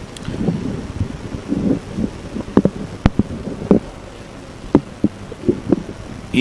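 Handling noise on press microphones: a low rumble with several sharp clicks and knocks, and faint muffled sounds between them.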